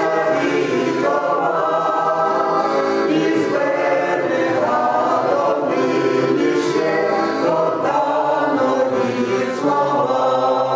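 Mixed choir of older men and women singing a Ukrainian folk song in harmony, with accordion accompaniment.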